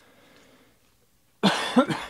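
A man coughs, loudly, twice in quick succession in the last half-second, after a faint rustle of trading cards being flipped through by hand.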